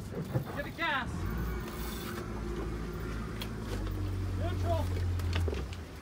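Boat engine put in gear and driven for a hard left turn: a steady low engine hum starts about a second in and stops shortly before the end. Brief shouts are heard over it.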